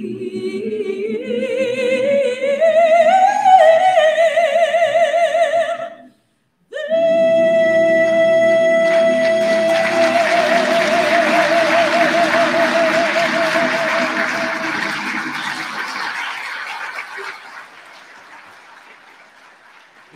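Mixed choir singing the close of a piece: the voices climb in pitch, break off for a moment, then hold one long final chord with vibrato that dies away near the end.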